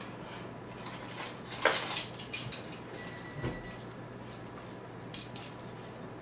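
A set of metal measuring spoons jangling and clinking as they are handled, in two spells: about a second and a half in, and again near the end.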